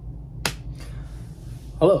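A man's voice saying "Hello" near the end, preceded about half a second in by a single sharp click, over a steady low hum.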